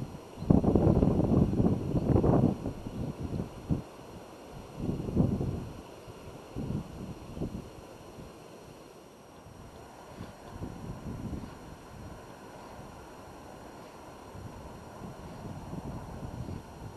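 Wind buffeting the microphone in gusts, loudest for a couple of seconds near the start and again about five seconds in, then easing to a steady low rumble.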